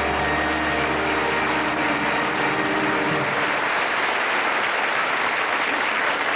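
Studio audience applauding steadily after the sketch's punchline. A held musical chord sits under the applause and cuts off about three seconds in.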